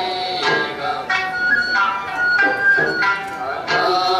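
Traditional Ryukyuan dance music: a sung voice and a flute holding long notes over a plucked sanshin, with a pluck or beat roughly every second.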